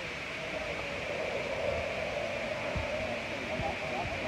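Indistinct background voices over a steady hiss, with a couple of soft low bumps in the second half.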